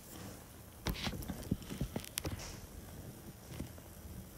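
A series of light, irregularly spaced clicks and knocks, starting about a second in, over a faint steady background.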